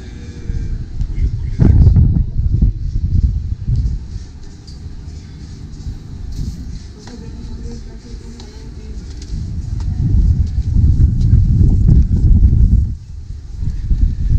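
Wind buffeting the camera microphone: a low, irregular rumble that swells about two seconds in, eases off, then builds again for the last few seconds before dropping away suddenly.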